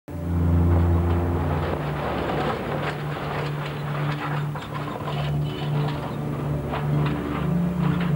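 A truck engine and road noise passing on a dirt road, with background music of held low notes running underneath.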